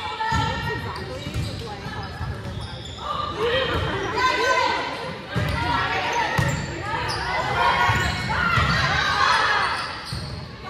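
Volleyball rally in a gymnasium: the ball smacked by forearms and hands several times while players shout calls, everything echoing off the hall.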